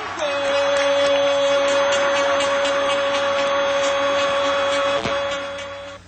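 A television football commentator's long, drawn-out goal cry, held on one steady pitch for nearly six seconds after the ball goes in. Behind it are crowd noise and a run of sharp beats.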